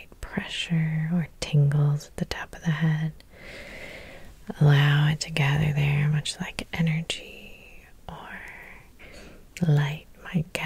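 A woman's soft, whispery speech in short phrases, with sharp clicks between them.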